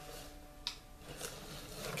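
Faint, soft rubbing of hands working body lotion into the skin of the forearm, with a single small click about two-thirds of a second in.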